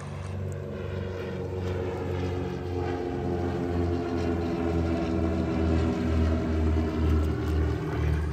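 Propeller drone of a small twin-engine plane flying low overhead, steady in pitch with a slow regular pulsing, growing gradually louder as it comes over.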